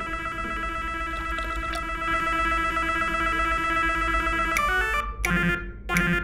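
A fruit machine (slot machine) running: a steady electronic tone with rapid ticking as the reels spin, then a few short electronic beeps and jingles near the end.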